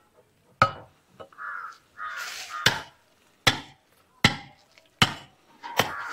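A flat-bladed, axe-like laterite-cutting tool chopping into a laterite block to trim it: six sharp blows, the last four coming quicker, under a second apart. A call-like sound comes between the first and second blows.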